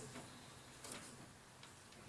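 Near silence: room tone, with two faint ticks, about a second in and near the end.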